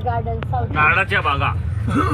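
Steady low running rumble of a moving passenger train heard from inside an AC three-tier sleeper coach, with people's voices talking over it.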